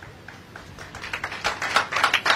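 Light, irregular clicks or taps in a pause between speech, starting faint and growing quicker and louder toward the end.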